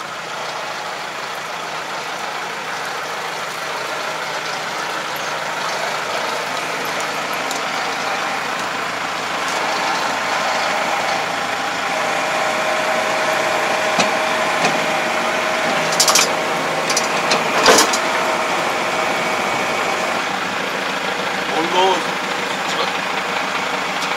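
Kubota 44-horsepower tractor's diesel engine running steadily while the tractor backs up and couples to a wing harrow. In the second half a steady whine joins the engine for several seconds, and a few sharp metal clanks come from the hitch as it links up.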